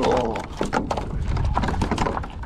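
A freshly netted fish flopping in a rubber-mesh landing net on a kayak deck: a quick, irregular run of slaps and knocks, over low wind rumble on the microphone.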